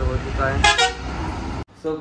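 Street traffic rumble with a short vehicle horn honk a little over half a second in; the sound cuts off abruptly near the end.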